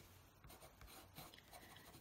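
Faint scratching of a Faber-Castell watercolour pencil drawing leaves on paper.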